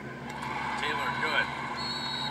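Basketball game broadcast playing from a TV, with crowd noise and voices and several short gliding squeaks in the middle.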